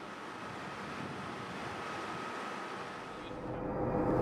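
A steady rushing noise. From about three seconds in it gives way to the low rumble of a moving bus heard inside its cabin.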